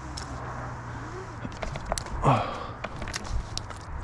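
Climbing rope and metal hardware being handled: a run of sharp clicks and knocks, with one short vocal sound of falling pitch about two seconds in, as the rope is flung up over the branch.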